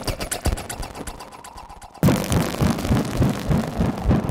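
Patched analog synthesizers (Behringer 2600, Pro-1 and Studio Electronics Boomstar 5089) putting out a run of uneven clicks that fade lower. About halfway through, the sound switches abruptly to a louder, dense noisy texture with a fast low pulsing.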